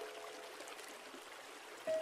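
Steady rushing of a waterfall, with the held notes of soft, slow relaxation music fading out and a new sustained note coming in near the end.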